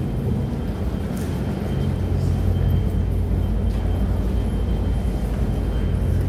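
Steady low rumble and hum of a train station's pedestrian underpass, with a few faint clicks over it.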